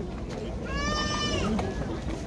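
A single high-pitched cry about a second long, falling slightly at its end, over the steady murmur of a crowd.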